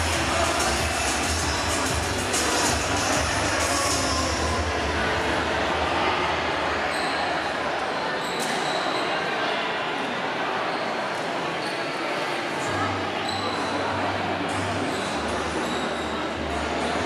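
Background music with a low bass line, mixed with the chatter of a crowd in a large indoor hall; the bass fades about halfway through and comes back near the end.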